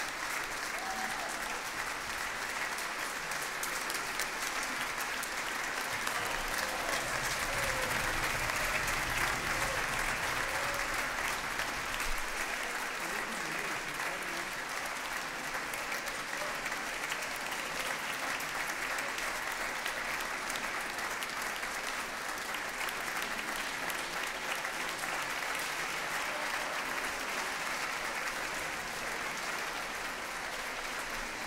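Audience applauding steadily, swelling a little about eight to twelve seconds in.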